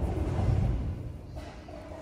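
Two grapplers shifting their weight on a jiu-jitsu mat: a dull thump, then a rustle of bodies and clothing against the mat that fades after about a second.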